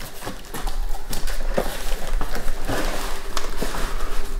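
Cardboard shipping box being opened and handled: flaps rustling and scraping, with irregular knocks and clicks as the box is tipped and the wheel inside shifts.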